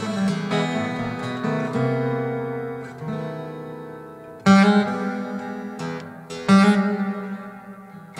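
Acoustic guitar played solo, with notes and chords ringing and sustaining. In the second half come two loud strummed chords, about two seconds apart, each left to ring out and fade.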